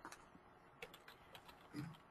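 Faint computer keyboard keystrokes, a few light, scattered clicks over near silence.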